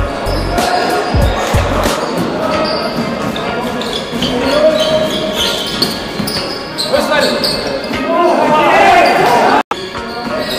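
Basketball bouncing on a wooden gym floor, a few thuds in the first two seconds, with players calling and shouting to each other in a large hall; the shouting is loudest near the end.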